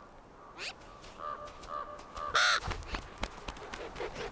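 Ravens calling: a drawn-out call, then a loud, harsh caw about two and a half seconds in.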